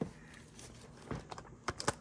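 Light clicks and taps from a shrink-wrapped cardboard trading-card display box being handled, with a faint plastic crinkle. One click comes at the start and a quick cluster of them near the end.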